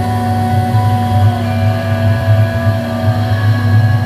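Slow background music with long held notes, over the steady low running noise of a speedboat's outboard motor at speed.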